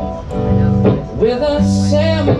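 Guitar strumming chords live through a PA, the chords ringing between strokes about every half second.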